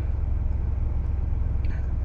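2.7-liter EcoBoost twin-turbo V6 of a 2021 Ford Bronco idling, heard from inside the cab as a steady low rumble.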